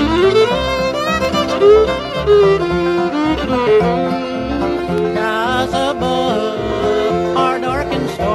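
Bluegrass band playing an instrumental break with no singing: a fiddle carries the melody with sliding notes over steady string-band accompaniment.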